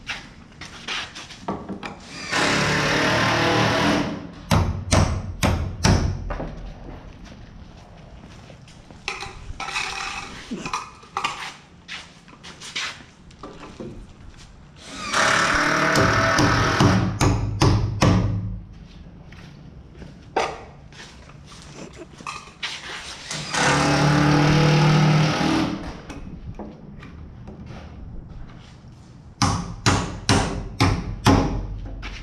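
Hammer blows nailing electrical boxes onto wall studs, in quick runs of sharp strikes. A power drill runs three times, for about two seconds each.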